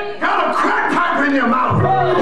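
Church congregation shouting and calling out together, several loud voices overlapping.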